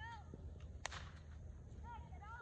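A single sharp bullwhip crack a little under a second in.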